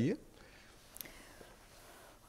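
The last syllable of a man's question cuts off, then near silence of room tone with a faint breathy hiss and a single soft click about a second in.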